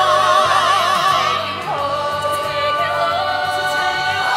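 Group of singers holding long notes in harmony with vibrato, moving to new notes about halfway through.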